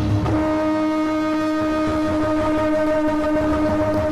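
A long blown horn holding one steady note with strong overtones, sounding as a drone in a live band set.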